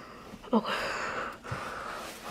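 A quietly spoken 'okay', then a breathy exhale lasting under a second, and a soft low bump near the end.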